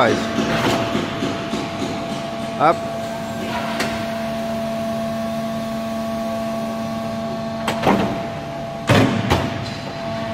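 Cheetah C fighter's main landing gear retracting in a gear-swing test on jacks, against a steady hum of ground hydraulic power. Several clunks come near the end as the gear reaches the up position.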